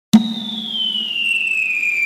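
Intro sound effect: a sudden click, then one steady whistle-like tone that glides slowly downward in pitch, like a falling-bomb whistle.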